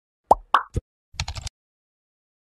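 Animated-intro sound effects: three quick pops, then, about a second in, a short rapid run of clicks.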